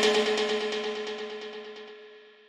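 Ping-pong delay echoes and long reverb tail of a synthesized percussive techno lead dying away once the loop stops, fading steadily with a held pitched ring underneath.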